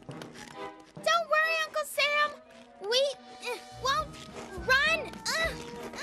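Children's short wordless vocal sounds, high-pitched and rising then falling, over cartoon background music.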